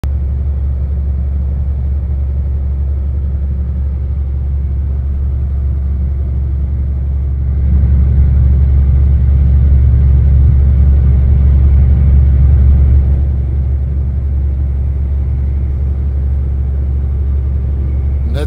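A 400-horsepower truck's diesel engine running steadily at cruise, heard from inside the cab: a low, even drone that grows louder for about five seconds in the middle.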